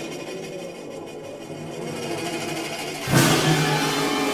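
Orchestral music: a dense, rapidly repeating texture, then a sudden, louder entry of the full orchestra about three seconds in.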